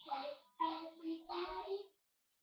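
A young girl singing: three short phrases in a row, each with a held note.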